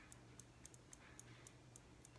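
Faint, quick taps of fingertips on the fleshy side of the other hand (the EFT karate-chop point), about five a second, over a low steady room hum.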